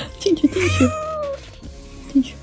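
A domestic cat meowing while its mouth is held open by hand to be given medicine. There are a few short meows and one longer, drawn-out call in the first second and a half.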